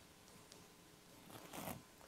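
Clip-on lavalier microphone being handled as it is fastened to clothing: faint rubbing and rustling of fabric against the mic, swelling into a brief scrape about a second and a half in.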